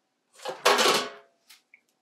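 An enamel tray scraping and clattering as it is slid across the painting table, with a little metallic ring, followed by two light knocks.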